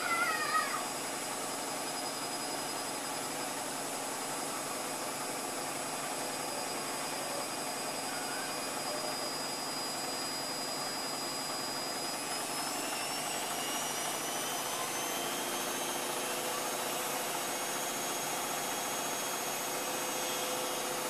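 Whirlpool AWM5145 front-loading washing machine on its spin cycle: a steady running noise with a motor whine that holds one pitch, then climbs about halfway through as the drum speeds up. A brief wavering high-pitched call sounds at the very start.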